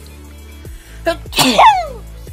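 A woman sneezing once, loudly: a short catch of breath about a second in, then the sneeze itself with a falling voice.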